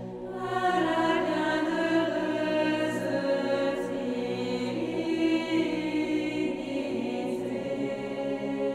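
A choir singing a slow French hymn in long held notes over a steady low accompaniment, swelling about half a second in.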